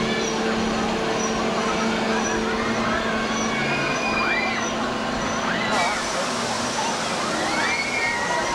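People's voices and calls, rising and falling in pitch, over steady background noise, with a steady low hum that fades about three-quarters of the way in.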